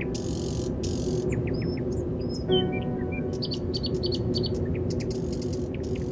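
Birds chirping and tweeting over a sustained ambient music pad. About two and a half seconds in, a held chord swells in.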